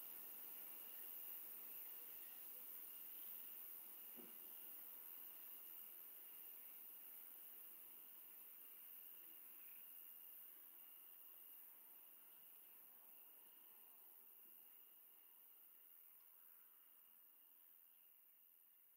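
Faint night ambience of crickets and frogs, a steady high chirring that slowly fades toward silence.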